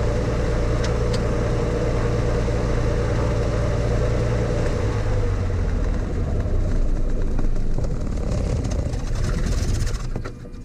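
Single-engine light airplane's piston engine idling on the ground with a steady drone. Its pitch settles slightly lower about halfway through, and the engine cuts out at the very end as it is shut down.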